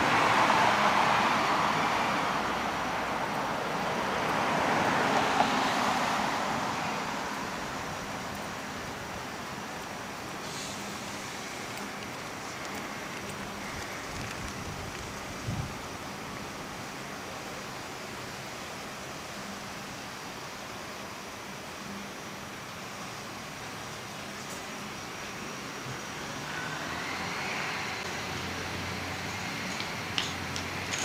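Street traffic: motor vehicles pass close by at the start and again about five seconds in, then a quieter, steady hum of more distant traffic that swells a little near the end.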